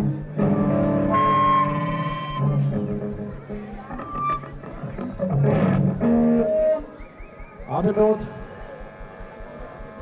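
Amplified electric guitar notes and chords ringing out and fading in a pause between songs, with indistinct voices.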